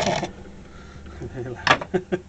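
A rib scraping the side of a thrown bowl of grogged crank-and-porcelain clay on a spinning potter's wheel: a gritty rasp from the grit in the clay, which stops a quarter second in. A man laughs near the end.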